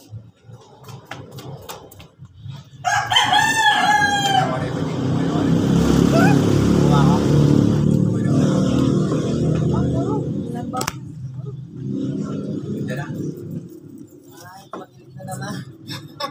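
A rooster crowing once, about three seconds in, a single long call lasting over a second. After it comes a loud low rumble lasting several seconds.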